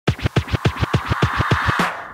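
Hip-hop turntable scratching: a rapid run of record scratches, about seven a second, each sweeping down in pitch, stopping just before the end.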